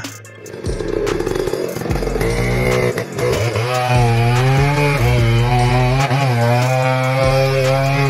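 Chainsaw cutting into the trunk of a large tree, its engine pitch rising about two seconds in and then holding steady under load as the bar bites into the wood.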